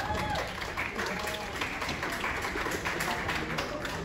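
Audience applauding, a dense patter of many hands clapping, with a few voices talking over it.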